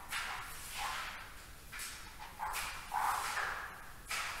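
Wet mop swished across a floor in repeated strokes, about five in four seconds at an uneven pace, the strongest stroke near the end.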